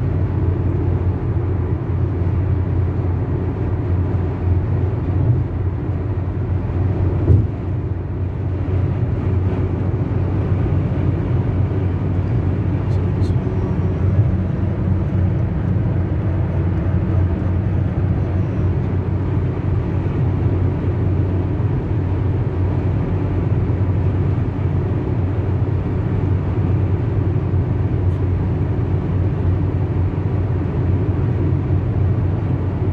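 Steady road and engine noise heard inside a car's cabin cruising at highway speed, about 130 km/h. There is a brief knock about seven seconds in.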